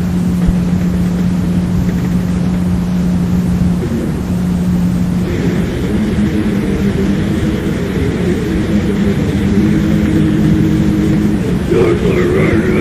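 Lo-fi demo-tape recording of heavily distorted guitar over a dense noisy wash, holding one low note that breaks off briefly just before four seconds in and then moves into a thicker, brighter chord from about five seconds in.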